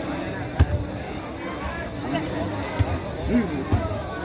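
A football struck by players during a footvolley rally: three sharp thuds, the loudest about half a second in, over spectators' chatter.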